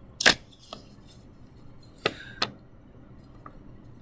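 Fingertips tapping and pressing a small piece of polymer clay on a plastic transparency sheet over a desk: a sharp tap about a quarter second in, a faint one soon after, and two more taps about two seconds in, less than half a second apart.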